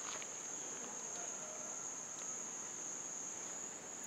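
Steady, high-pitched drone of insects, one unbroken tone that holds level throughout.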